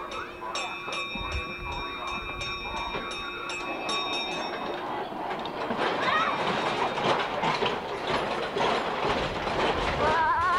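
Kiddie amusement ride running: a steady hum with a regular ticking about three times a second, then, about halfway through, a louder rattling rumble as the ride cars go round.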